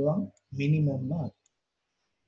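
A person speaking for about a second, then a short pause with a faint single click, like a computer mouse button.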